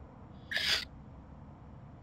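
A single brief breathy hiss, about a third of a second long, like a sharp sniff or breath through the nose, over faint steady background noise.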